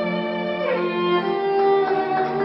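Background music led by a violin playing long held notes, with the melody moving to new notes about two-thirds of a second in and again near a second and a half.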